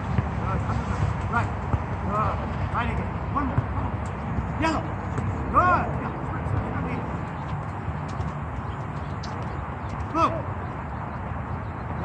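Short, distant voice calls now and then over a steady low outdoor rumble, with a few faint taps scattered through.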